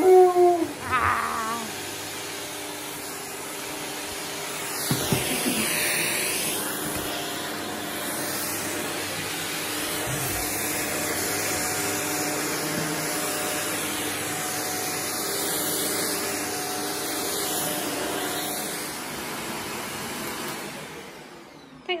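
Shark upright vacuum cleaner with a silicone brush head running steadily as it is pushed over a rug and carpet, dying away shortly before the end. A dog whines briefly at the start.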